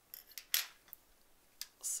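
Small scissors snipping embroidery thread: a few short, sharp cuts, the loudest about half a second in.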